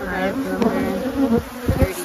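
Honey bees buzzing around an opened hive, several flying close past the microphone so their buzz rises and falls in pitch. A few dull low bumps come in the second half.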